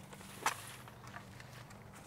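A white plastic hanging-basket pot and its wire hanger handled as the pot is lifted: one sharp click about half a second in, then a few faint ticks, over a steady low hum.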